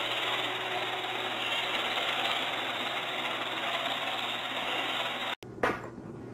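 Robot vacuum cleaner running: a steady motor and brush noise with a low hum. It cuts off suddenly about five seconds in, followed by a short knock.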